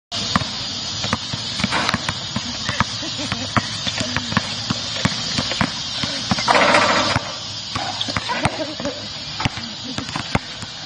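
A basketball bouncing again and again on an outdoor hard court as it is dribbled, over a steady background hiss. About six and a half seconds in there is a brief, louder clatter as a shot reaches the hoop.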